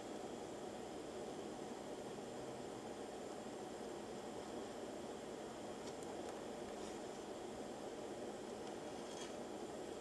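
Faint steady hiss of a steel pan of milk heating on the stove as condensed milk is poured in, with a few faint ticks.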